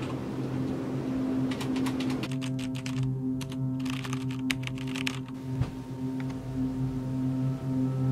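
Typing on a computer keyboard: a dense run of key clicks in the first few seconds, thinning to scattered taps after about five seconds. Underneath is background music of steady sustained notes.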